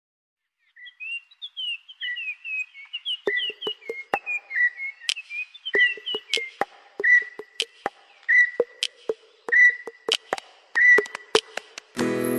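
Bird chirps and whistled calls over sharp clicks in an even rhythm, with a whistled note repeating about every second and a quarter. It starts from dead silence with no background noise, typical of the intro of a recorded music track rather than live sound on the lake.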